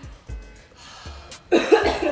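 A woman coughs hard twice in quick succession about one and a half seconds in, into her elbow, a reaction to the extremely hot chicken-wing sauce. Background music with a steady low beat plays throughout.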